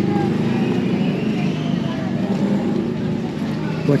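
An engine running steadily close by, with market voices in the background.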